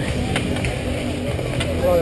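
Outdoor street hockey game ambience through a helmet-mounted camera microphone: a steady low rumble and hum with indistinct shouting voices in the background.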